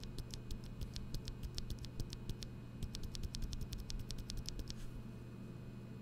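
A loose NovelKeys Cream linear switch, lubed with Krytox 205g0, pressed over and over by finger at the microphone: a quick, uneven run of faint clicks as the stem bottoms out and springs back, stopping about five seconds in. The lube leaves it quiet.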